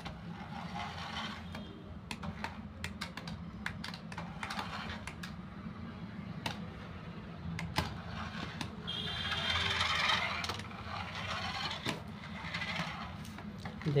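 Battery-powered toy RC jeep driving in spurts across artificial turf: its small electric motor and plastic gears whir, with scattered clicks, and the longest and loudest run comes about nine to eleven seconds in. A steady low hum lies underneath.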